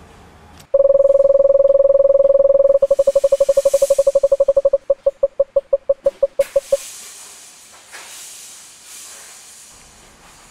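Synthesized electronic tone of one steady pitch that comes in abruptly about a second in. After a couple of seconds it breaks into rapid stuttering beeps that space out and stop near the seven-second mark. A soft hiss follows.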